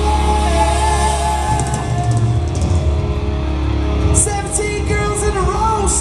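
Live glam metal band playing loud: distorted electric guitar, bass and drums with cymbal hits, and singing over it.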